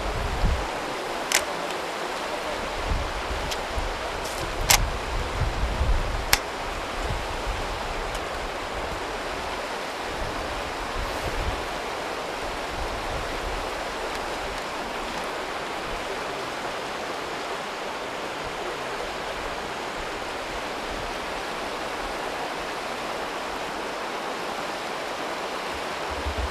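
Steady hiss of background noise with a few sharp clicks in the first seven seconds and some low rumbling early on that then fades.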